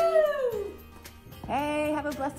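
A dog howling once: a single cry that rises briefly, then slides down and fades within the first second. Near the end, a new voice begins.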